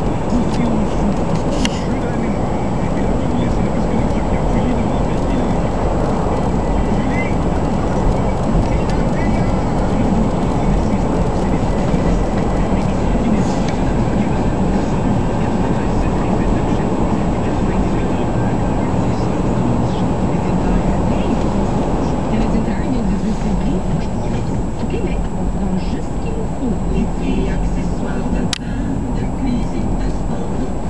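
Storm wind buffeting the camera microphone: a loud, steady, low rushing rumble with a brief click near the end.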